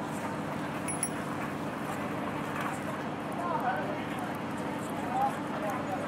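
Train station platform ambience: a steady background hum and noise, with faint, indistinct voices now and then.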